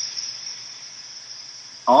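A steady high-pitched whine in the video-call audio during a pause in speech. This is the audio fault in the recording that was described as an audio issue. A man's voice starts just at the end.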